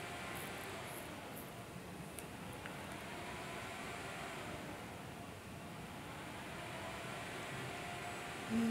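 Steady background hiss with no clear source, with a couple of faint clicks a little after two seconds in.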